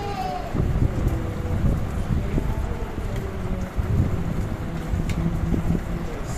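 Steady low rumble of air blowing on the microphone, with a few light knocks of a plastic spatula against an aluminium cooking pot as the rice is scooped.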